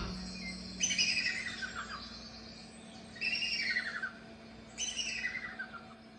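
Three bird calls from a cartoon soundtrack played through a portable projector's built-in speaker, each a call that slides downward in pitch over most of a second, coming about a second and a half apart.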